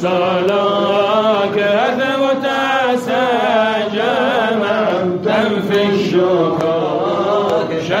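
Voices chanting an Arabic Sufi devotional poem (inshad) in a sustained, wavering melody that runs on without pause.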